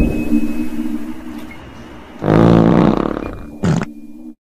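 A loud, buzzy fart about two seconds in, followed moments later by a brief crash of something landing on the pavement.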